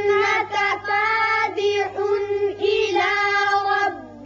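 A child's high voice reciting a Qur'an verse in a melodic tajweed chant, holding long steady notes on the drawn-out vowels with brief breaks between phrases.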